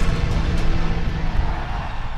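Loud channel-intro music mixed with a dense, rumbling roar like an explosion sound effect, fading out toward the end.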